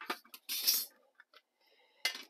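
Small metal mint tin handled on a tabletop: a few light clicks and clinks, then a short scrape of thin metal, as the tin is set down and its hinged lid is flipped open.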